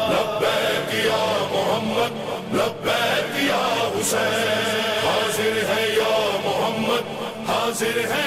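Chanted vocal music: several voices holding long, layered notes without pause, with a few brief sharp hits scattered through.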